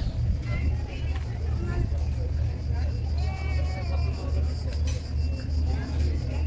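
Busy street ambience: scattered voices of people talking, over a steady low rumble.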